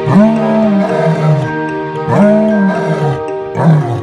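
A white lion roaring: three long roars in a row, each rising and then falling in pitch. Background music with sustained notes plays under them.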